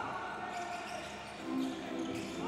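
Basketball dribbled on a hardwood court, the bounces faint against the arena's room sound.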